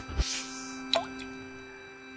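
Logo intro music with sound effects: a held chord fading out, a short whoosh just after the start, and a brief rising blip about a second in.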